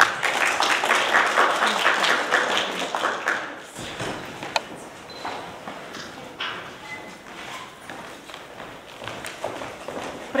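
Audience applauding for about three and a half seconds, then dying away to a few scattered claps and knocks.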